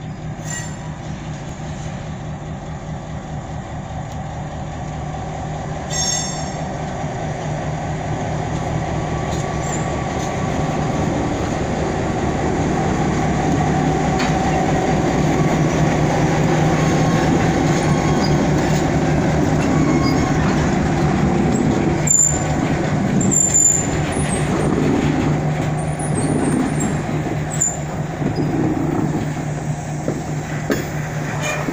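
Diesel switcher locomotive running past at low speed, its engine drone growing louder as it closes in and peaking as it passes. The freight cars then roll by, with brief high wheel squeals about two-thirds of the way through.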